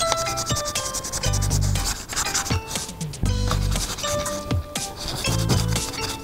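Sandpaper rubbing in repeated strokes over a carved guava-wood slingshot frame, heard over background music with a deep beat and a melody.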